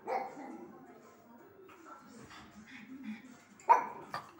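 Pug barking: one bark at the start and a sharper, louder one near the end, with television sound playing faintly underneath.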